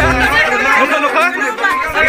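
Voices talking, several at once, overlapping one another.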